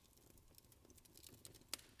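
Near silence: faint room tone with a few soft clicks, one slightly louder near the end.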